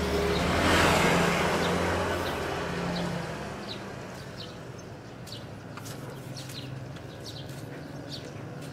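A motor scooter passing close by, its engine and tyre noise loudest about a second in, then fading away over the next few seconds. Faint bird chirps follow.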